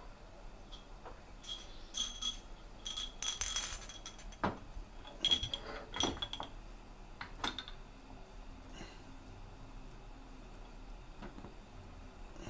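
Ramune soda bottles clinking and knocking against the gas stove's burner grate and pot as they are held into the flame. A run of sharp ringing clinks, loudest about three and a half seconds in, dies away after about seven seconds.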